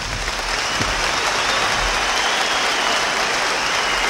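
Large concert audience applauding, swelling in at the start and then holding steady.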